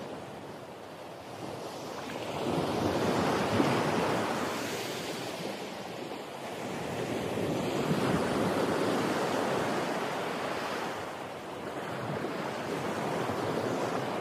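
Ocean surf: a steady wash of waves that swells and fades about every five seconds.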